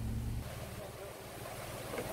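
A vehicle engine idling with a low steady hum that cuts off abruptly less than half a second in, leaving faint wind and outdoor noise.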